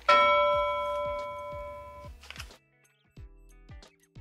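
A single bell-like chime strikes once at the start and rings out, fading over about two seconds, followed by near quiet.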